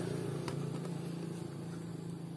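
A vehicle engine running steadily in the background, its low hum fading away. There is a single light click about half a second in.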